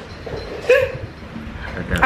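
A single short, high yelp a little under a second in, over faint room noise.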